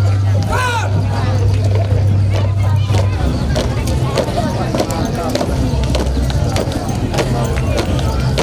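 Street parade ambience: voices and crowd chatter over loud music with a heavy bass line whose low note holds for about three seconds, then shifts between pitches, with scattered sharp clicks.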